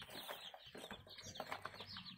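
A boxful of day-old chicks peeping faintly: a dense chatter of many short, falling chirps.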